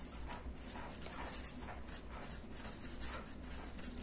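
Chisel-tip marker writing on paper: faint short strokes of the felt tip as words are written out by hand.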